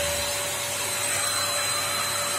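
Yokiji KS-01-150-50 brushless random orbital sander running steadily on a car door panel, a steady whine over an even sanding hiss. Its pad is held by hand so it does not rotate and only the eccentric orbit works.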